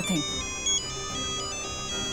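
Mobile phone ringing: a high electronic ringtone melody of short notes stepping up and down, over soft background music.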